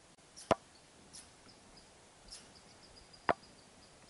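Two short, sharp clicks about three seconds apart, with faint high chirping in the background.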